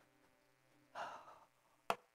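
A person's sigh close to the microphone about a second in, lasting about half a second, then a single sharp click just before the end.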